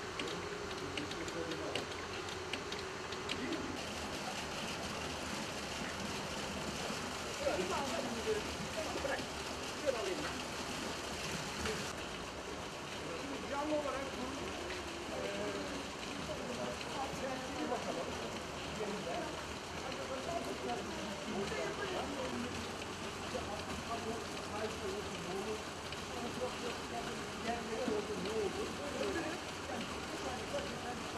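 Indistinct voices of several people talking at a distance over a steady background hiss. The hiss changes in character a few seconds in and again about twelve seconds in.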